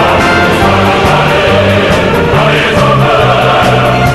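A choir singing a North Korean song over instrumental accompaniment, with a bass line moving between held notes.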